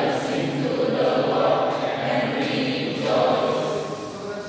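Mixed choir singing in parts, holding full sustained chords that break off near the end.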